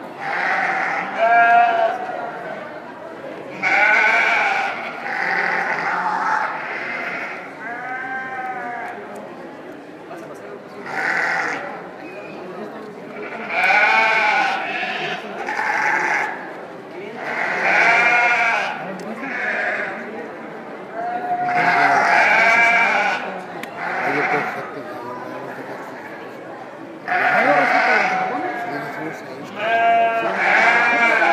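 Several sheep bleating over and over, about a dozen wavering calls of a second or so each, coming every couple of seconds.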